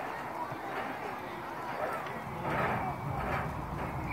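Faint voices talking in the background, with two short rushes of noise in the second half.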